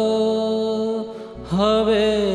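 A male voice sings a Gujarati devotional kirtan, holding a long note that fades about a second in, then starting a new phrase with an upward swoop about a second and a half in. A steady low accompaniment runs underneath.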